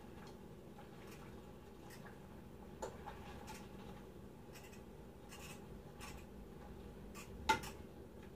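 Faint scraping and light taps of a utensil stirring instant ramen noodles in a pot on the stove, with a sharper knock about three seconds in and a louder one near the end.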